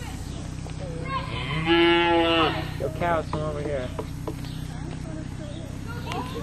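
A young cow bawls: one long, loud call of about a second and a half starting about a second in, followed by a few shorter calls, over a steady low hum.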